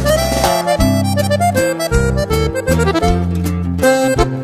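Instrumental break of a norteño song: an accordion plays the melody over strummed guitar and bass.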